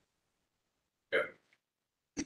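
Near silence broken about a second in by one brief vocal sound from a person, a short hiccup-like noise lasting about a third of a second.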